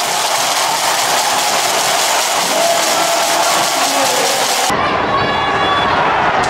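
Football stadium crowd cheering after a goal, a loud steady wash of noise. About four and a half seconds in, it cuts abruptly to a different, fuller crowd sound.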